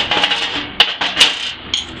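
A steel test plate handled and set down on a steel welding table: a short scraping clatter, then two sharp metallic knocks about half a second apart.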